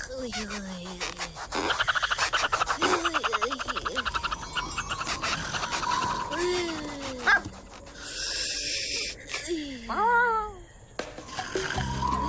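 Cartoon soundtrack without dialogue: wordless character voice sounds that slide up and down in pitch, with a fast rhythmic pulsing sound for a few seconds early on, a sharp click, and a brief burst of hiss, over light background music.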